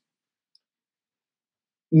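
Near silence: the sound drops out completely in a pause, and a man's voice comes back in right at the end.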